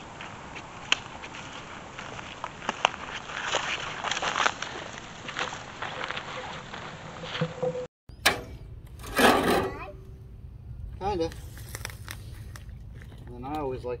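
Scattered crackles and clicks, as of footsteps in dry brush and grass; then, after a cut, a loud scraping noise, a short burst of voice and a low steady hum.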